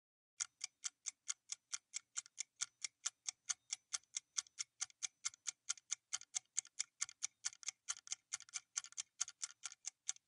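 Quiz countdown-timer sound effect: fast, even clock ticks, about four or five a second, marking the time left to answer.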